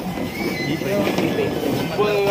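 Indistinct chatter of several men talking over one another in a crowded room, with no one voice standing out.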